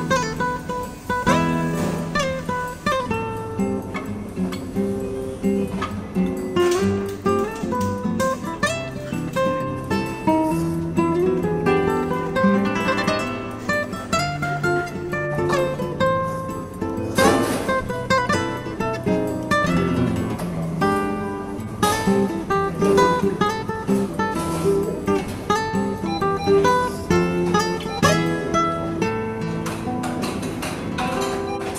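Background music: a solo acoustic guitar in flamenco style, plucking runs of notes with a few full strummed chords.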